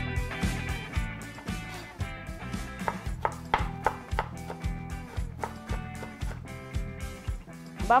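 Background music with a steady beat, with a knife chopping bell pepper on a plastic cutting board under it in the second half.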